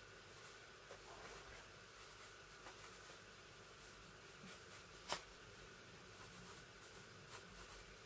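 Faint scratching of a pencil drawing on paper, with one sharper tick about five seconds in.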